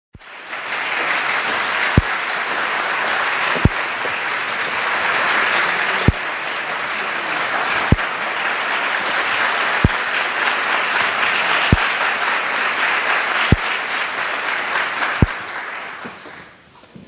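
Concert-hall audience applauding steadily, dying away near the end. A short low thump sounds through it about every two seconds.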